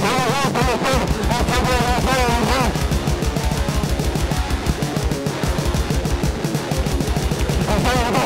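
Fast, heavy metal music: rapid drum hits under distorted guitar, with wavering, pitch-bending lines over the first few seconds.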